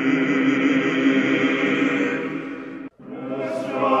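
Male vocal ensemble singing unaccompanied Orthodox sacred chant, holding a sustained chord. The chord fades and breaks off briefly about three seconds in, then the voices come back in and swell.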